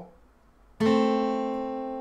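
Steel-string acoustic guitar: two notes, A and C, plucked together about a second in and left to ring, fading slowly.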